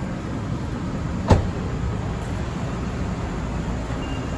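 A car door shut once: a single sharp thud about a second in, over a steady low background rumble.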